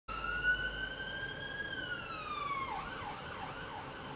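Emergency-vehicle siren passing outside: a slow wail that rises and then falls, switching about two-thirds of the way through to a fast, warbling yelp.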